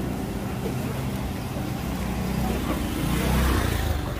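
Motorbike engine running close by, swelling louder about three seconds in as it passes, over the chatter of the market crowd.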